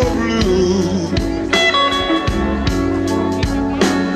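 Live electric blues band playing a slow blues: electric guitar over bass and drums, with a steady drum beat, in an instrumental gap between sung lines.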